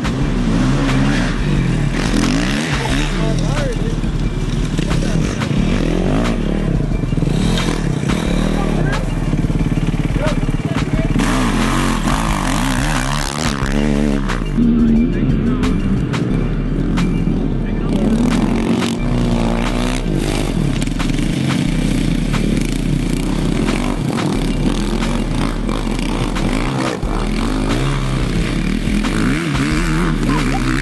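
Several off-road dirt bike engines revving up and down as riders pass through a muddy field section, their pitch rising and falling repeatedly.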